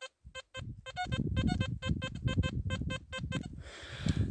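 XP ORX metal detector giving its target tone: a quick run of short, mid-pitched beeps, about five a second, as the search coil is swept over a signal lying at the surface of the soil.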